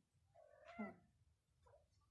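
Domestic cat meowing: one drawn-out call with a wavering pitch that falls away at its end, about half a second in, followed by a fainter short call near the end.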